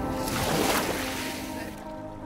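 A small sea wave washes up over a pebble beach: a brief rush of water that swells within the first half second and dies away before the end, under soft music.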